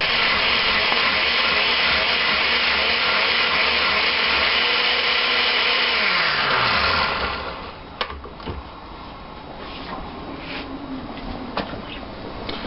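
Countertop blender running steadily, puréeing dried chiles with meat stock, then switched off about seven seconds in, its motor pitch falling as it winds down. A few sharp clicks follow.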